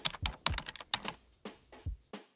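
Computer keyboard typing sound effect: a quick, irregular run of key clicks.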